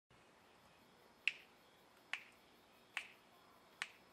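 Four finger snaps at a steady slow tempo, about 0.85 s apart: a count-in before the music starts.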